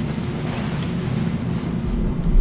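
A steady low rumble with a faint hum.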